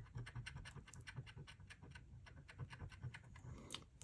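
A coin scratching the coating off a lottery scratch ticket in quick, faint, repeated strokes, several a second. The coin is pressed hard because it scratches poorly on this ticket.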